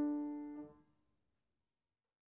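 Last piano chord of the closing music dying away, gone within the first second, then silence.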